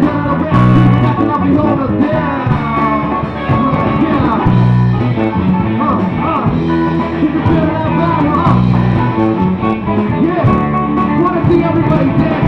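Live band playing a song loud and without a break: electric guitar and bass notes repeating underneath, with a singer's voice sliding in pitch over the top through the PA.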